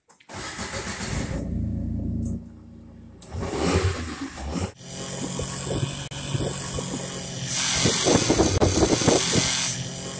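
Kawasaki Mule Pro-FXT side-by-side's three-cylinder engine starting and running, then, after a cut, revving as the vehicle spins through deep snow. A loud hiss rises over the engine near the end as the tyres throw up snow.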